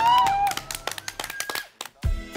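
A few people clapping, with a high held cheering whoop that glides and ends about half a second in. The clapping thins out and stops near the end.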